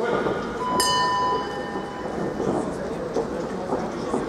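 Ring bell struck once about a second in, its metallic tone ringing out and dying away over about a second, over crowd chatter and shouting. It signals the start of the round.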